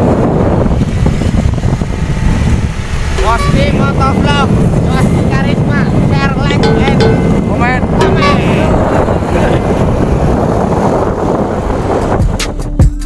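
Wind rushing over the microphone and a motor scooter running on the road while riding, steady throughout. A person's voice calls out over it from about three seconds in until about nine seconds in.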